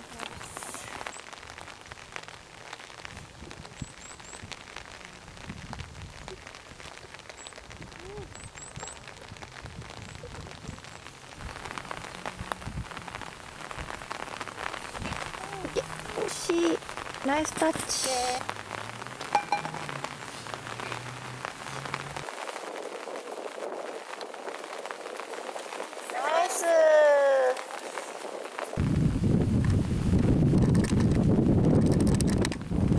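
Steady rain falling, an even hiss throughout. Women's voices break in briefly a few times in the second half.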